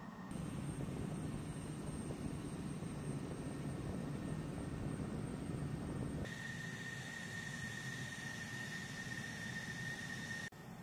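Steady aircraft engine noise on a flightline: a low rumble with a faint high tone. About six seconds in it switches suddenly to a thinner sound carrying a steady high whine.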